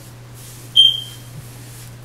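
A single short, high-pitched ping a little under a second in that fades quickly, over a steady low hum.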